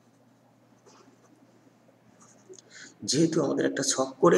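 Pen writing on paper: faint, scattered scratching strokes. About three seconds in, a man starts speaking, much louder.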